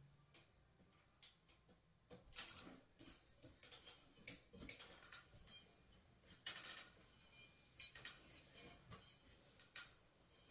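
Faint, scattered light clicks and rustles of small plastic earbud parts being handled, about ten separate taps spread over several seconds.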